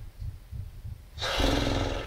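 A short, rough, strained vocal sound, like a grunt, starting a little over a second in and lasting most of a second, after a few faint low thumps.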